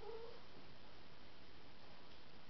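A small dog giving one short, high whine of about half a second right at the start, a sign of its separation anxiety.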